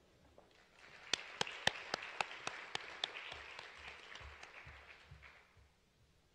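Audience applauding briefly, with a few sharp single claps standing out above the rest; it starts about a second in and dies away shortly before the end.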